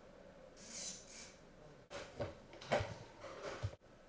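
Handling noise as the recording camera is picked up and moved. A soft rustle about half a second in is followed by a run of knocks and clicks, the loudest near the middle.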